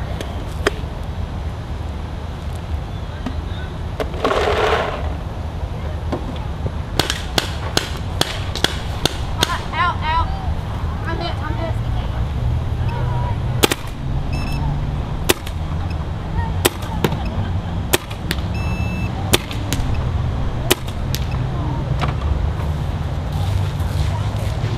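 Machine Vapor paintball gun fired shot by shot through a chronograph to read its velocity: many sharp pops at irregular intervals, several in a quick run partway through, over a steady low rumble.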